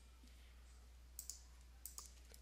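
A few faint computer mouse clicks in the second half, over near-silent room tone with a low steady hum.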